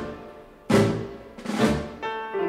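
Dance orchestra playing a tango: two loud accented chords a little under a second apart, each dying away.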